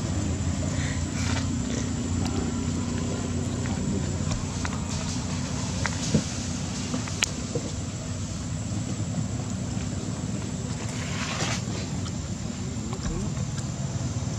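Steady low background rumble with a few faint clicks and rustles, and a brief noisy burst near the end.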